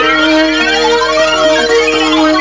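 Electronic dance track: held synth chords under repeated rising, siren-like synth sweeps.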